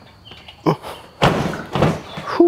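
Suzuki DL650 V-Strom being heaved onto its new Happy Trails center stand: a short grunt of effort, then about a second in a heavy clunk and rush of noise from the stand and bike lasting most of a second. Getting the bike up is very difficult.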